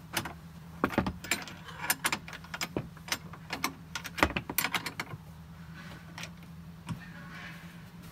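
Steel wrenches clinking against a bolt head, a nut and chain links as a bolt on a chain-link harness mount is tightened, with irregular sharp metal clicks. The clicks come thickest in the first five seconds and thin out after that.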